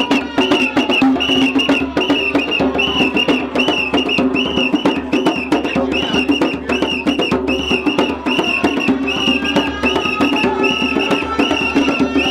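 Traditional African dance music driven by hand-drum percussion, with a steady fast beat that runs on without a break.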